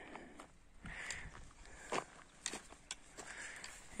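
Faint footsteps, a few soft irregular steps, against a low outdoor background.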